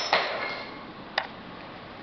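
Seat belt and its plastic buckle being handled and pulled free of a prototype seat-belt lock: a brief clatter and rustle at the start, then one sharp click just over a second in.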